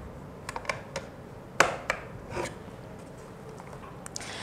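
About six light plastic clicks and taps, the sharpest about a second and a half in: an RJ45 Ethernet plug being pushed into the port of a plastic wireless access point and the unit being handled.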